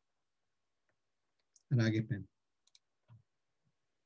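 Near-total silence on a video-call line, broken about two seconds in by a brief burst of a voice, with a few faint clicks before and after it.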